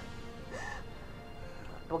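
A woman's short crying sob about half a second in, over soft background music.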